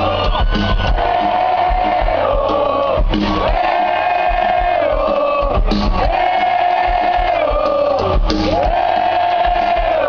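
Live rock concert heard from within the crowd: a long held sung note, repeated four times about every two and a half seconds and falling away at the end of each, over steady crowd noise and a low rumble from the PA.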